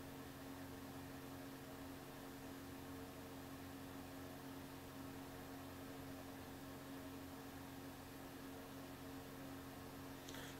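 Faint, steady hiss with a low electrical hum: the background noise of the microphone and room, with nothing else sounding.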